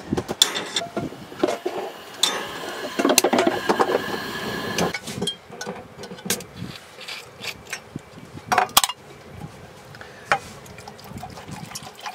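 Camp-kitchen clatter: a saucepan and utensils knocking and clinking in scattered sharp clicks, with liquid being poured into a cup.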